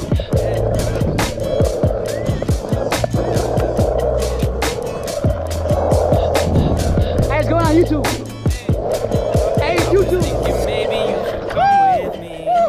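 Skateboard wheels rolling over the concrete of a skatepark bowl, with many sharp clicks and knocks from the board and trucks along the way.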